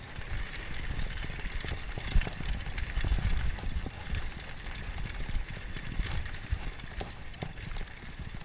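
Mountain bike riding fast down a rocky dirt trail: tyre noise over dirt and stones, with frequent clicks and knocks as the bike rattles over rough ground, and wind rumbling on the microphone.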